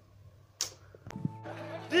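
A short whoosh sound effect about half a second in, then music starts with steady held tones just after the one-second mark.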